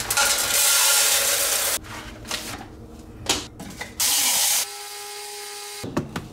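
Espresso-making sounds from a De'Longhi countertop espresso machine and its coffee. A loud rushing burst lasts almost two seconds, followed by light handling clatter. About four seconds in, a second loud burst settles into a steady hum with a few clear tones, which stops just before the end.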